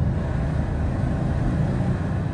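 The deep, steady rumble left after a large explosion sound effect, a low roar that stays level through the moment.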